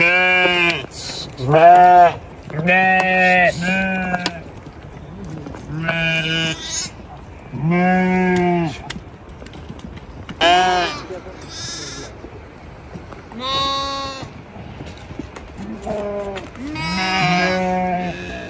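A flock of sheep bleating: about a dozen separate calls, one every second or two, some close together.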